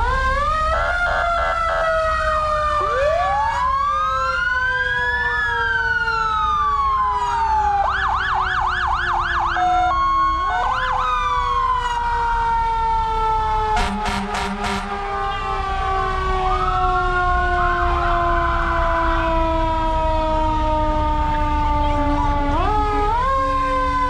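Several emergency-vehicle sirens sounding at once: overlapping slow wails rise and fall, with quick yelping bursts about a third of the way in and again near the end. A brief harsh blast comes about two-thirds of the way through.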